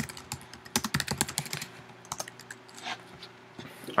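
Typing on a computer keyboard: a quick run of key clicks over the first couple of seconds, then a few scattered keystrokes.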